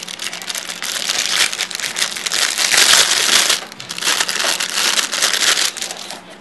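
Clear plastic packaging bag crinkling and rustling in the hands as a lens hood is unwrapped from it, loudest around the middle with a short lull a little past halfway.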